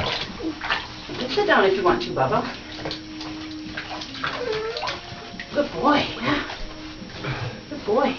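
Bathwater sloshing and splashing in a bathtub as wet chow chow puppies are scrubbed by hand, with several short vocal sounds over it, some falling in pitch.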